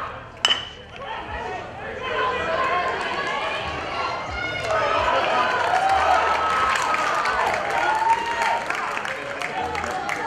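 Metal baseball bat striking a pitched ball: one sharp ping with a brief ring about half a second in. Many people shouting and cheering follow as the play runs out.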